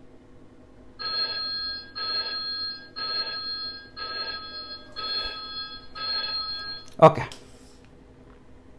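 On-screen countdown timer sounding its end-of-countdown alarm: six ringing beeps about a second apart as the count runs out to zero. A short spoken "OK" follows near the end.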